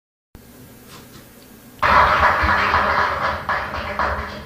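Low hiss of a cheap cassette recording, then about two seconds in a sudden loud burst of live audience noise that dips and surges again near the end.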